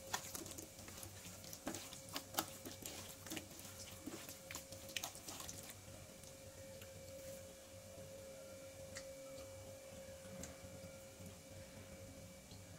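Wet squishing and clicking of a bare hand working chicken pieces through a thick spice-paste marinade in a steel bowl, many quick sounds in the first half, thinning out after about six seconds. A faint steady hum runs underneath.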